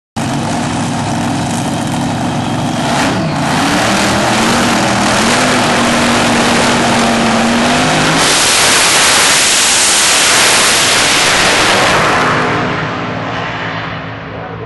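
Supercharged Top Alcohol dragster V8 engines idling at the start line, the engine note rising about three seconds in. About eight seconds in they launch at full throttle with a sudden, much louder blast that holds for about four seconds, then fades as the cars pull away down the strip.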